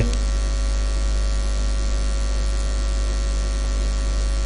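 Steady low electrical mains hum with a faint hiss, unchanging throughout.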